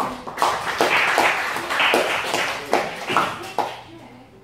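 Audience clapping at the end of a talk: many quick hand claps together, loud at first and thinning out near the end.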